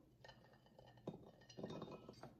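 Faint clinks and taps of peeled garlic cloves tipped off a ceramic plate into a ceramic bowl, with the plate's edge knocking lightly on the bowl, about a second in and again near the end.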